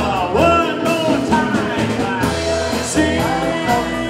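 Live band music with singing: a pop song played on keyboards, guitar and drums, with a voice carrying the melody.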